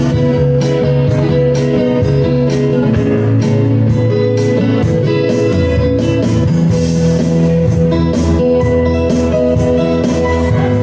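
Live acoustic band playing an instrumental passage: acoustic guitar over keyboard, with a steady beat.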